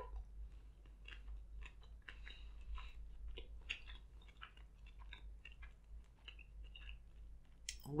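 Faint, close-up chewing of a mouthful of food: soft, irregular mouth clicks and smacks.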